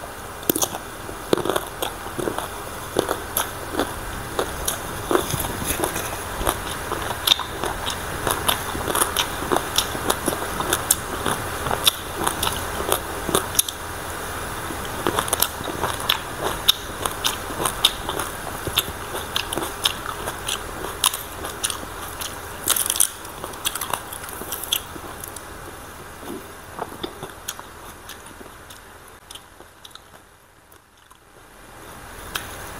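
Close-miked chewing of crunchy green papaya salad: a steady run of crisp, irregular crunches with each bite and chew, thinning out and fading near the end.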